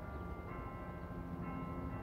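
Several sustained ringing tones at different pitches, like bells or distant music, some coming in about half a second and a second and a half in, over a steady low city hum.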